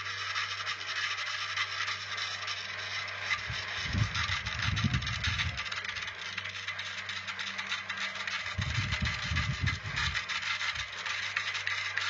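A hand-held turning tool scraping continuously against a wooden drum shell spinning on a wood lathe, over a steady motor hum. Low rumbles come twice, about four and about nine seconds in.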